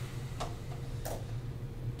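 Two sharp clicks, about two-thirds of a second apart, from a laptop being operated to start a video, over a steady low hum.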